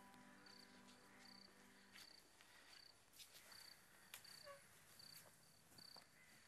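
Faint cricket chirping: a short, high note repeated a little more than once a second over near silence.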